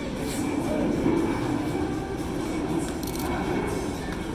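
A steady low rumble, swelling slightly about a second in and then holding.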